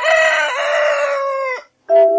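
A rooster crowing: one long, loud call that falls away and stops about one and a half seconds in.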